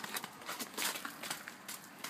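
Footsteps on wet, slushy tarmac, a soft step every half second or so.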